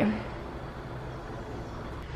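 Steady low background hum with no distinct event.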